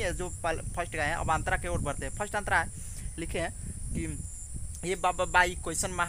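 A man talking, with a pause of about a second and a half midway, over a steady high-pitched drone of insects.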